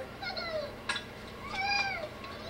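Playground swing squeaking as it swings back and forth, a short rising-and-falling squeal about once a second. There is a single sharp click about halfway through.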